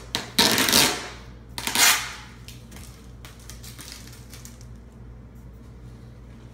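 Styrofoam packing slab scraping against the cardboard box as it is pulled out, two loud rushes in the first two seconds, then light clicks and rustles of handling.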